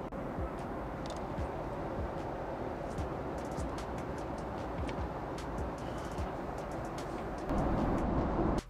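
Steady airliner cabin noise in flight, a constant rush of engine and air noise, with a few light clicks. It gets a little louder near the end.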